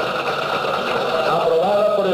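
Music with singing voices: a sustained, wavering sung melody that runs on without pause.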